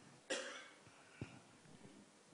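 A single faint cough about a third of a second in, followed by a faint click about a second later.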